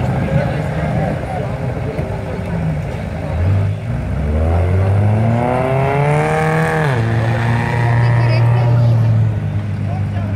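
A vehicle engine revving up steadily for about three seconds, then dropping sharply and running at a steady, higher speed before falling away near the end, with voices in the background.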